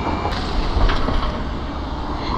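Street traffic passing through an intersection: cars and a box truck driving by, a steady rumble of engines and tyre noise.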